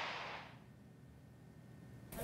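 The tail of a news-graphics whoosh sound effect, fading away over the first half second, then near silence.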